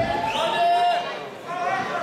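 People talking and chattering in a large hall, with no music playing.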